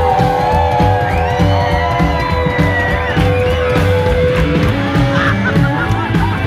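Live rockabilly band playing loudly, with a long held note through most of it and excited voices calling out over the music.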